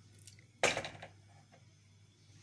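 A single sharp clatter of kitchenware about half a second in, dying away quickly, over a faint low hum.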